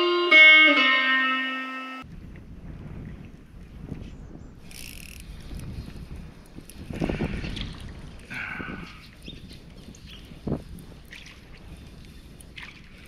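Electric guitar (a Fender Stratocaster) playing a few sustained, ringing notes that stop abruptly about two seconds in. Then comes quieter kayak-on-the-water sound with a few faint rustles and one sharp knock a little past ten seconds.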